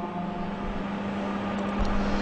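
A steady low electric hum with background hiss from a microphone and loudspeaker system while no one speaks.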